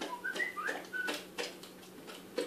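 Newfoundland dog eating spaghetti from a hand: wet mouth clicks and smacks as he chews, with a few brief, thin, high squeaks in the first second.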